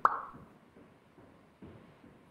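A single short pop right at the start, dying away within about half a second, with faint soft low knocks in the background.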